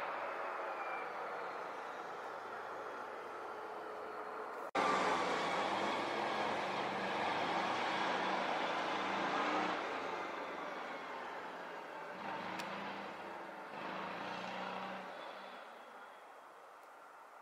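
Rhaetian Railway train hauled by an old electric locomotive, running along the line at a distance: a steady rumble of wheels on rail with a faint motor hum. The sound jumps louder at an abrupt cut about five seconds in, then fades away over the last few seconds.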